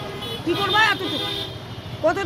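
A woman speaking, with street traffic in the background.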